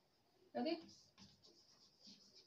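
Chalk writing on a blackboard, faint, starting about a second in.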